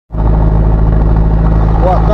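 Steady, loud running noise of a vehicle cruising at a constant speed: engine drone and wind/road noise, cutting in abruptly just after the start.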